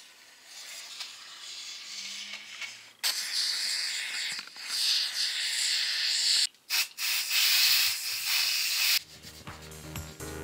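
Expanding foam hissing out of the nozzle of a foam gun as gaps are filled: faint at first, then loud and steady for several seconds with two short stops. Music comes in near the end.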